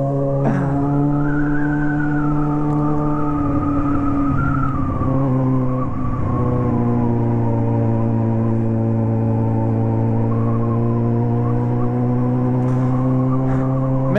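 Yamaha XJ6 inline-four motorcycle engine holding steady revs while cruising at about 50 km/h, one steady droning note that wavers briefly around five seconds in.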